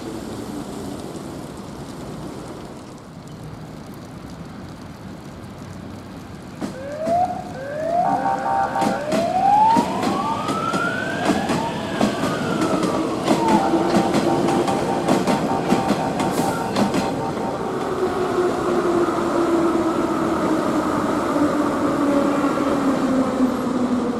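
Kyiv metro train's traction motors whining as it gets under way: two short rising glides, then one long whine that climbs, peaks and falls away. Quick clicks of wheels over rail joints run through the middle. The train passing by leaves a steady hum.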